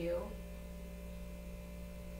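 Steady low electrical hum with no other sound, after the last word of a woman's spoken sentence at the very start.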